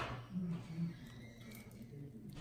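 A short noisy burst at the start, then a couple of brief, low murmured voice sounds.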